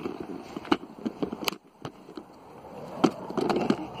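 Kick scooter rolling over a tarmac driveway: wheel rumble with scattered sharp clacks and knocks, a brief lull about a second and a half in, and the rolling noise growing louder near the end.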